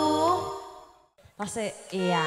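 Live band music with singing ends on a held note that fades out within the first second. After a moment of silence comes a short burst of voice.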